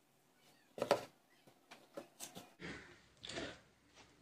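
Handling noises at a work table: a few light knocks and clicks of small objects being picked up and set down, the loudest about a second in. A soft rustle follows in the second half.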